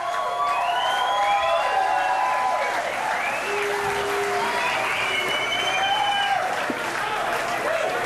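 Club audience applauding and cheering at the end of a song, with shouts rising and falling above the steady clapping.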